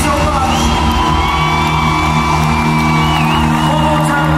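Live rock band playing a slow song in a large hall: a sustained chord underneath, with long high held notes on top, one bending near the end.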